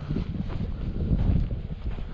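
Wind buffeting the microphone, heard as an uneven low rumble.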